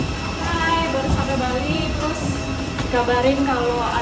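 Steady low rumble of aircraft and airport ground noise at an open airliner door, with voices talking over it.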